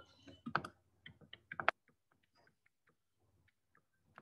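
Stylus tapping and clicking on a tablet's touchscreen while handwriting: a quick run of short, fairly quiet clicks in the first couple of seconds, then a few fainter ticks.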